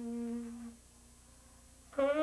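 Tenor saxophone holding a low note that fades away within the first second, then about a second of near-quiet pause, before the next note starts sharply at the very end.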